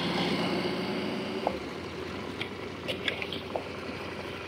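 KTM 890 Adventure's parallel-twin engine running at low revs as the motorcycle rolls slowly over gravel, its note fading as it slows. A few light clicks from the gravel under the tyres.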